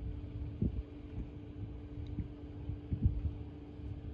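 Wind rumbling on the microphone with a few short low thumps, over a faint steady hum.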